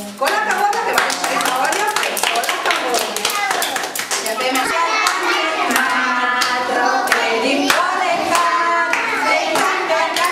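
A group of children and a woman clapping their hands, many quick claps in loose rhythm, over a woman's and children's voices singing and talking.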